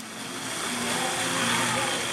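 Steady outdoor rushing background noise with faint, distant voices in it.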